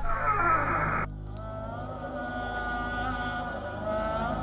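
Crickets chirping in a steady pulsed rhythm, about two chirps a second, over a sustained, slowly wavering musical drone. A rushing noise cuts off about a second in, and the drone takes over from there.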